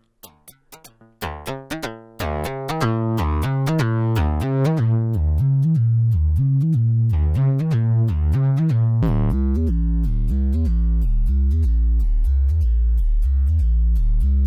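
A sequenced melody of Karplus-Strong plucked-string notes from an Intellijel Rainmaker's comb resonator, each note excited by a short white-noise burst from its ping input. As the filter in the feedback loop is stepped through its presets (guitar, then sitar), the timbre changes, and about nine seconds in the notes turn much heavier in the bass.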